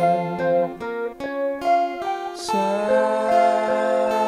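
Acoustic and clean electric guitar playing together: picked notes ring and change every half second or so over steady plucked strokes, with a brief scratchy pick stroke a little past halfway.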